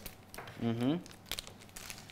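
Sealed wrapper of a COVID-19 antigen test cassette being torn open and crinkled, with scattered crackles and a sharper crackle about a second and a half in. A short vocal sound comes just under a second in.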